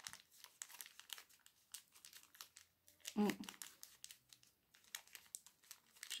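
Faint crinkling and small clicks of wrapping being handled as fingers turn over and open a small gift pouch.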